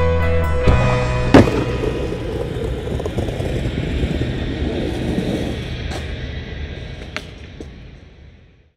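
Music stops within the first second. About a second and a half in comes a single sharp crack of a skateboard landing on pavement, the loudest sound here, followed by the rumble of its wheels rolling on the paved path, fading out steadily.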